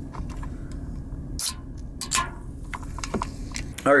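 Steady low rumble of a car heard from inside the cabin, with a few light clicks and taps of handling.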